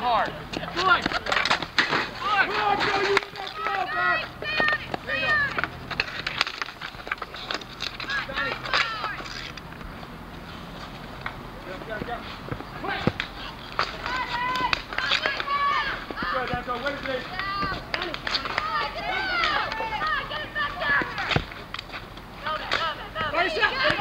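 Street hockey players shouting and calling out during play, mixed with sharp clacks of sticks striking the ball and the pavement. The voices drop back for a few seconds midway, then pick up again.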